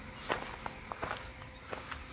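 Footsteps on a gravel path, a run of short, irregularly spaced steps.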